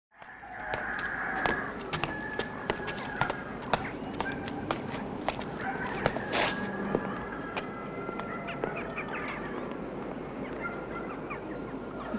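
Chickens calling and clucking in a farmyard, possibly with a rooster crowing, over frequent sharp clicks. The sound fades up from silence at the very start.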